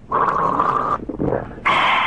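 Two loud, breathy, rasping groans from a man's voice: the first lasts about a second and the second starts near the end.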